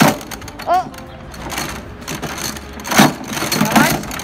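A young child's short high-pitched voice sounds and quick giggly calls, with knocks and rattles from a playground bucket swing on metal chains near the start and again about three seconds in.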